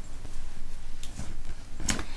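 Quiet room with faint handling and rustling sounds and a single sharp click near the end.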